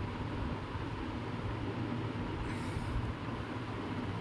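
Steady background noise, a low rumble with a faint hum and hiss, with a brief higher hiss about two and a half seconds in.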